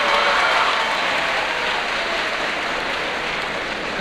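Audience applauding in a hall, a steady patter of clapping that fades as the speaker resumes.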